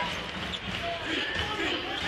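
Basketball being dribbled on a hardwood court in an arena, heard through a TV game broadcast.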